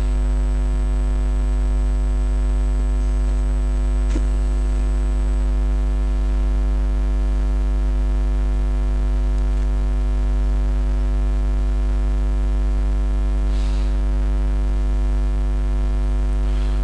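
Steady, unchanging electrical mains hum with a long row of evenly spaced overtones. There is a faint click about four seconds in.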